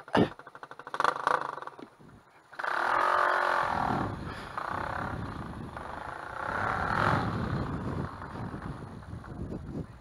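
Tuned Gilera DNA 180 scooter engine pulling under the rider, its note swelling twice, loudest about three seconds in and again near seven seconds.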